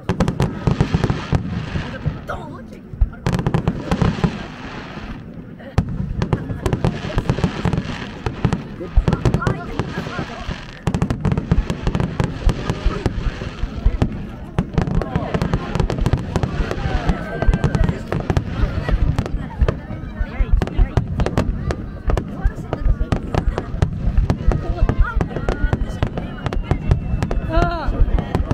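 Fireworks display: a rapid, near-continuous barrage of bangs and crackles from many aerial shells bursting, with two brief lulls in the first few seconds.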